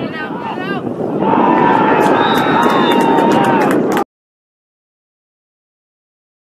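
Voices cheering and shouting, swelling loudly about a second in with long drawn-out yells, then cut off suddenly to silence at about four seconds.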